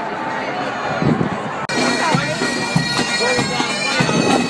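Marching band's bagpipes playing a tune over steady drones, mixed with crowd voices; the pipes become suddenly louder and clearer a little under halfway through.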